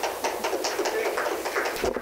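Small audience clapping: a quick, irregular run of claps that stops near the end.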